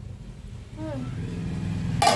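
A low motor hum that sets in about a third of the way through and grows slightly louder.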